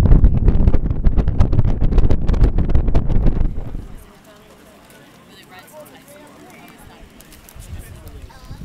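Wind buffeting the microphone, a loud, rough rumble, for about the first three and a half seconds; then it cuts off suddenly to a much quieter background of faint, distant voices.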